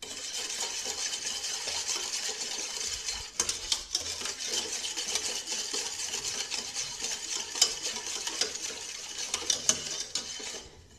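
Wire whisk beating a thin milk mixture in a metal saucepan: a steady swishing, with the wires ticking against the pan's sides and a few sharper clinks near the end.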